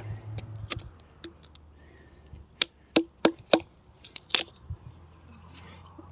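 Small hatchet chopping into a short piece of firewood on a chopping block to split it into kindling: a series of sharp knocks, most of them close together from about two and a half to four and a half seconds in, as the wood is broken apart.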